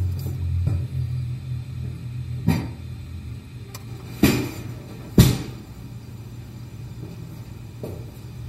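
Three sharp knocks, the last about five seconds in being the loudest, as the padded parts and frame of a bondage bed are handled and moved, over low steady background music.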